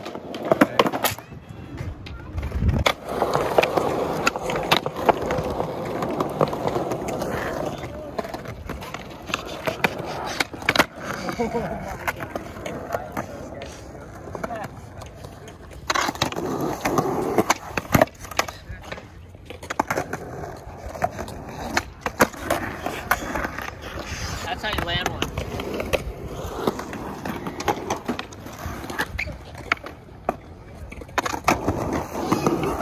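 Skateboard wheels rolling on smooth concrete, broken throughout by sharp clacks of the board's tail popping and the deck landing as flatground tricks are tried.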